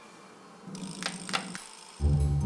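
Two short, sharp clicks about a third of a second apart, over a faint low hum that starts a little before them.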